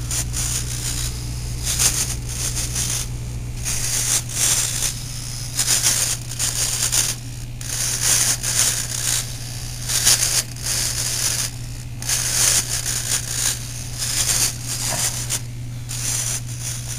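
RC servos in a model airplane's fuselage buzzing in repeated short bursts as they swing the control surfaces back and forth, over a steady low hum.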